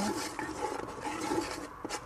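Wooden spatula stirring and scraping around the bottom of a cooking pot, dissolving a Maggi bouillon cube in olive oil, with a couple of light knocks near the end.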